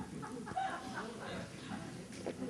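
A woman drinking from a glass of water, with a few faint gulping sounds.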